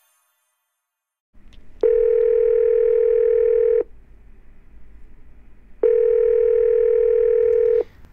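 Telephone ringback tone: the line ringing at the other end as the call is put through, two steady beeps of about two seconds each, two seconds apart, over a faint line hiss. Nobody is picking up.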